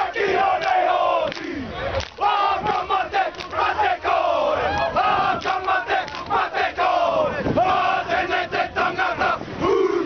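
A rugby team performing a haka: many men shouting the chant in unison, with sharp slaps between the shouted lines.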